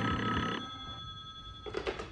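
Telephone bell ringing as a radio-drama sound effect; the ring stops about half a second in and its tone fades away. A short clatter follows near the end.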